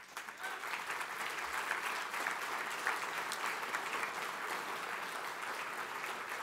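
A large audience applauding, rising quickly at the start and then holding steady.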